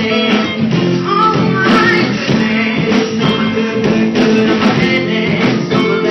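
A live full band playing a song, with guitar to the fore, recorded on a phone's microphone.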